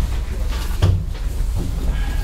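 A single dull thump a little under a second in, like a knock against wood, over a steady low hum from the room's microphones.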